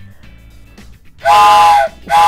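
Wooden toy train whistle blown once, starting just over a second in: a short, loud blast of several steady tones sounding together as a chord, with a breathy hiss.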